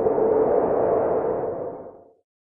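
Synthesized outro sound effect: a whooshing swell with a steady low tone running through it, fading in and then fading out near the end.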